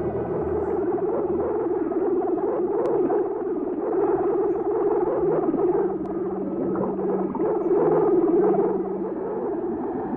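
Film soundtrack of an underwater scuba scene: synthesizer music over a steady, muffled underwater noise, with a low repeating note coming in about halfway through.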